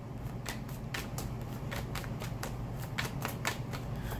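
A tarot deck being shuffled by hand: a rapid, uneven run of card clicks and slaps.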